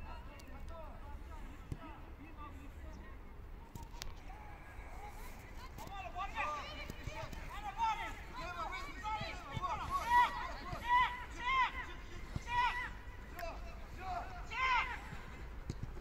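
Distant high-pitched shouts and calls of footballers on the pitch, growing more frequent from about six seconds in, over a faint steady low background rumble.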